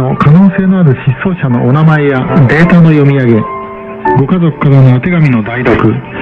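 A Japanese-language announcement heard from a shortwave radio broadcast on a Sony ICF-SW7600GR receiver, with music underneath. The sound is thin and narrow, cut off above its middle range as AM shortwave audio is.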